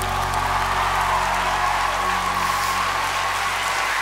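Audience applause breaking out as a song finishes, over the band's sustained final chord.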